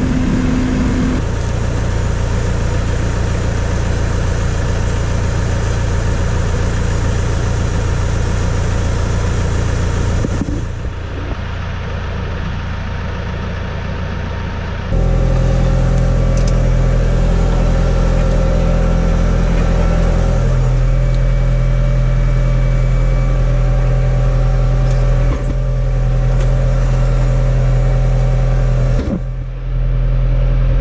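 Tractor engine running steadily while it pulls a mole plough through the ground to lay water pipe. The engine gets louder about halfway through.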